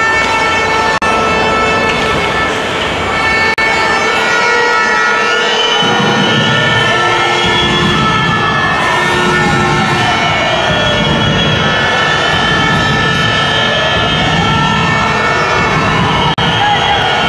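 A siren wailing in slow sweeps in the arena, rising to a peak about eight seconds in, falling away, then rising again near the end, over steady held tones and the noise of the rink crowd.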